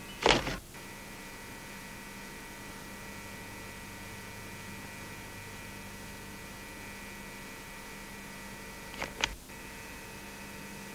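Steady electrical hum and hiss on an old videotape soundtrack, with a loud short crackle just after the start and two quick clicks near the end.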